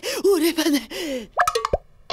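A cartoon character's wordless voice sounds, then about one and a half seconds in a quick comic sound effect: a few rapid upward pitch sweeps and a sharp falling blip.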